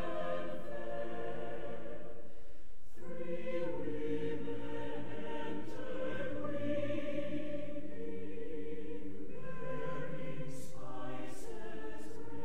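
A choir singing, the phrases breaking off briefly about three seconds in and again near the end.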